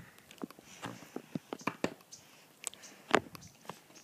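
Scattered light clicks and rustling while swinging on a chain swing with a phone held in hand, with one sharper click about three seconds in.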